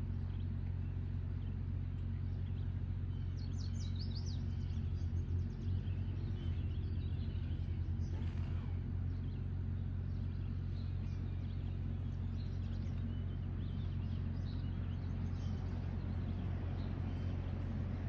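Outdoor ambience: a steady low hum, with birds chirping, a quick run of high chirps about four seconds in and fainter ones later.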